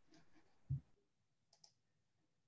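Faint sounds at a computer desk: a short low thump about three-quarters of a second in, then a quick double click of a computer mouse near the end.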